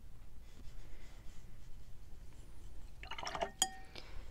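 Mostly quiet at first. About three seconds in, a watercolour brush is swished in its rinse water and then clinks once, sharply, against the container, with a brief ring.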